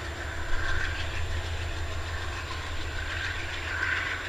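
Diesel freight locomotive moving away down the line, its engine a steady low rumble.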